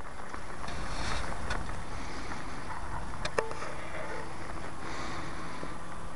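Faint, steady drone of a distant electric RC plane's propeller (a Cap 232 with a brushless outboard motor and 9x4 prop) flying high overhead, mixed with wind rumbling on the microphone. A single sharp click about three and a half seconds in.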